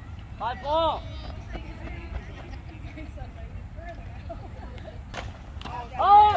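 A loud spectator shout about a second in over faint chatter and a steady low outdoor rumble, then the sharp crack of a baseball bat hitting the ball about five seconds in, followed by another shout as the batter runs.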